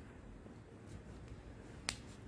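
Faint room tone, then a single sharp click near the end.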